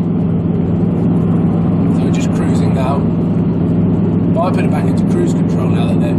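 Audi R8's V8 engine and road noise heard inside the cabin: a steady low drone while cruising, with no rise in revs.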